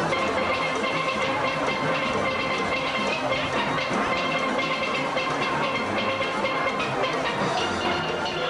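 Live steel band playing: many steelpans sounding a tune with a steady percussion rhythm underneath.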